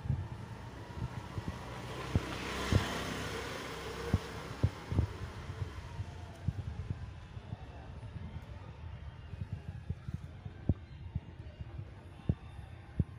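Irregular low thumps and knocks, typical of handling noise on a phone microphone, with a swell of wind-like rushing noise about two to three seconds in.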